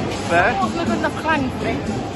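Voices and speech babble over the steady hubbub of a busy hall, with music playing in the background.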